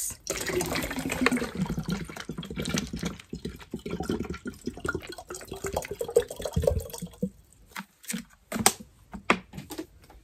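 Water pouring from a small plastic water bottle into a gallon water bottle as it fills, running steadily for about seven seconds and then stopping. A few sharp plastic clicks from handling the bottles follow near the end.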